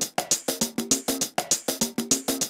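Electronic percussion loop playing: sharp clicky hits about eight a second, mixed with short pitched knocks.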